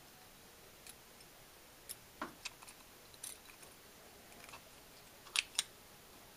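Faint, scattered small clicks and scrapes of a yellow axial film capacitor being pushed by hand into a 3D-printed plastic block, its wire lead threading through a hole. The clicks come singly and unevenly, a pair of sharper ones near the end.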